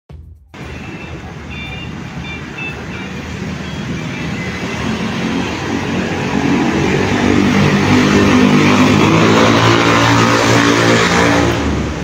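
Street traffic passing, with a vehicle engine growing steadily louder as it draws near through the second half.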